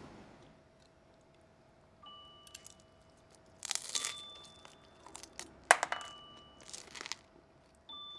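Someone chewing a mouthful of crunchy food, with three loud crunches in the second half. Under it, a faint steady tone with a few brief high chiming notes.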